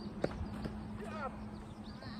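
A soft tennis rally: a rubber soft-tennis ball hit with a sharp pop about a quarter-second in, then a lighter knock, followed by a short voice call around the middle.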